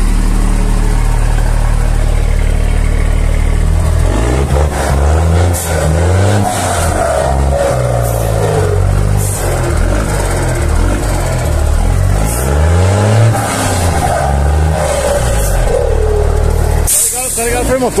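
Mercedes-Benz L1620 truck's turbo diesel engine idling and then revved up and down several times from about four seconds in, with a whistle from its turbocharger, which is fitted with a comb ('pente') to make it sing, rising and falling with the revs. A short burst of hiss comes near the end.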